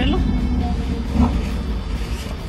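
Low, steady rumble of a car engine idling, heard from inside the cabin.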